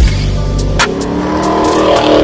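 Chevrolet Camaro SS's 6.2-litre V8 revving during a burnout, its pitch climbing, under intro music with a steady beat.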